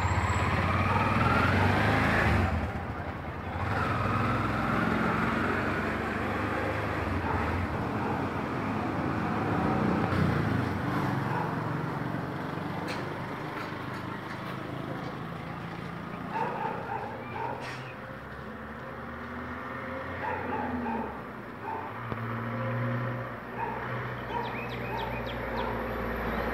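Roadside ambience: a motor vehicle passes close by, its engine loud and rising in pitch, then fades. Later a run of short, evenly repeated calls comes through over the background noise.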